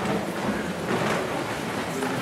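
Room noise of a seated audience in a large hall: a steady hush with faint murmuring and rustling.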